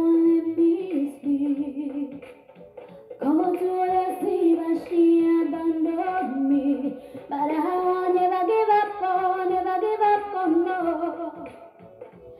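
A woman singing solo into a phone microphone. She holds long notes that slide between pitches, with short breaks between phrases.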